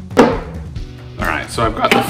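A single sharp knock about a fifth of a second in, from a plastic vacuum pod set down on a plywood table, over background music with a steady bass beat; a man starts talking near the end.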